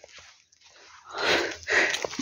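A heavy, breathy exhale close to the microphone about a second in, in two swells, after a near-silent pause.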